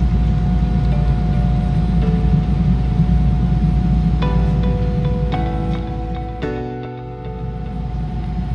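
Steady low rumble of cabin noise inside an Embraer E190 jet airliner in its climb. About four seconds in, background music of short pitched notes fades in, and the cabin rumble falls away near the end, leaving the music.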